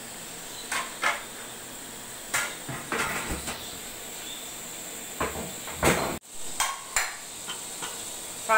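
Wooden spoon stirring beef and spices in an aluminium pressure cooker, knocking against the pot several times, over the steady sizzle of the meat frying.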